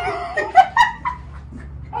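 A woman laughing in a few short, high bursts during the first second, then falling quieter.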